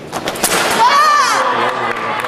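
Sabre fencing exchange: quick sharp clicks of blades and footwork on the piste, then one loud, high-pitched shout from a fencer as the touch lands.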